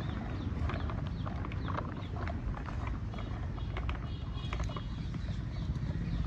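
Plastic toy tractors and their soil-loaded trolleys dragged on a string over sand and grit: irregular clicking and crunching of the plastic wheels over a steady low rumble.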